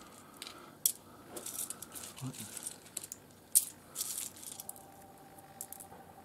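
Small pieces of rough opal clicking and rattling against each other as fingers sort through a pile of them, with a sharper click about a second in and another just past halfway.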